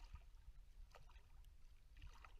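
Faint water sloshing around a swimmer floating on their back, with a soft splash about a second in.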